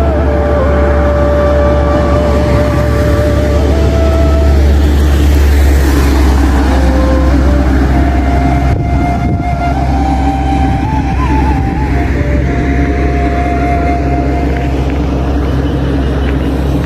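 Background music: a slow melody of long held notes over a steady low drone.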